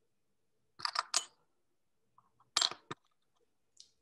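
A few short clicks and knocks of small objects being picked up and handled on a workbench. Three come close together about a second in, two more just past the middle, and a faint one near the end.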